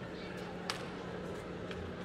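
Arena ambience of a murmur of voices over a steady low hum. A single sharp click comes a little after a third of the way in, and a few fainter clicks follow later.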